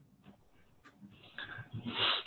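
A quiet pause on a webinar audio line with a few faint clicks. Near the end, faint vocal sounds from the presenter build up as he draws breath to speak again.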